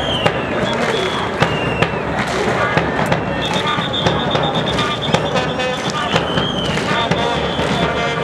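Football stadium crowd noise with frequent irregular sharp bangs and short high whistle blasts that rise and fall. About three and a half seconds in, a trilled whistle is held for more than a second.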